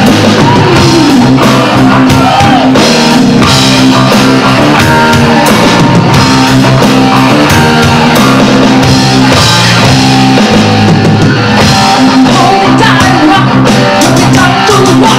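Live rock band playing: electric guitar and an electronic drum kit keeping a steady beat, with a girl singing into a microphone. Her vocal line comes in near the start and again near the end.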